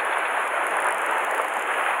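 Surf washing and breaking over the shore rocks: a steady rushing hiss of water.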